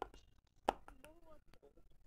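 A single sharp knock or click about two-thirds of a second in, with a weaker one at the start and faint voices around them.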